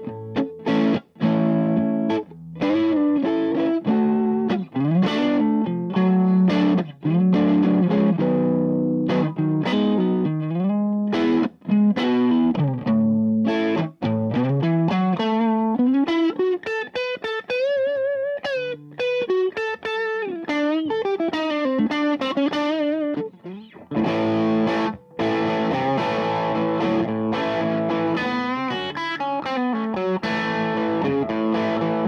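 Stratocaster-style electric guitar played through an Ace Pepper Super Sport, a hand-wired 40-watt tube amp with two 5881 power tubes and a GZ34 rectifier, into a 1x12 cabinet with an Austin Speaker Works Peacemaker speaker, set for clean tones with its More and There switches on. Chords and single-note lines, with a middle passage of bent, wavering notes and full ringing chords near the end.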